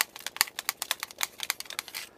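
Metal claw-glove blades tapping quickly on a plastic hockey mask: a rapid, uneven run of sharp taps, about ten a second.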